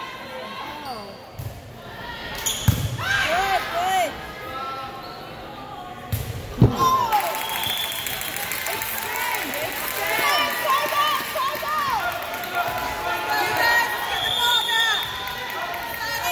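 Volleyball rally on a hardwood gym court: the ball is struck sharply about three seconds in and again at about seven seconds, in a reverberant hall. Sneakers squeak on the floor throughout, with players and spectators calling out.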